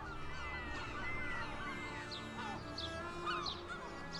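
Gulls crying, many short calls that rise and fall in pitch, over soft sustained background music.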